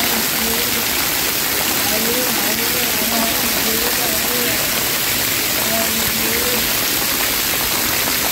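Water pouring and splashing from an overhead splash-pad shower fountain onto the wet floor: a steady, even hiss of falling spray, with faint voices in the background.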